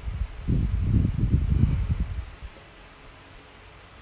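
Handling noise on a phone's microphone: about two seconds of low rumbling and dull bumps as the handset is held and moved, then only a faint steady hiss.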